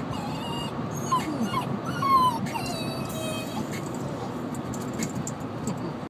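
A four-month-old puppy whimpering: a series of short, high-pitched whines that rise and fall, spread over the first three and a half seconds.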